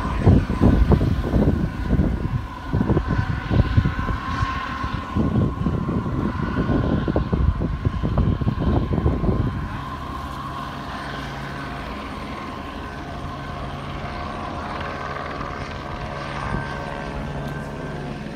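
Helicopter circling overhead: a steady drone with a faint high turbine whine. For roughly the first ten seconds it is overlaid by louder, irregular low rumbling, after which the steady drone is left on its own.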